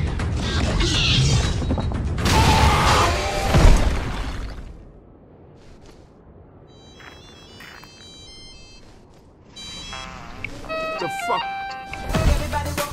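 Velociraptor calls from a film soundtrack over music, with a heavy thud about three and a half seconds in. A quieter stretch follows with sparse short high tones, and music-like notes build again near the end.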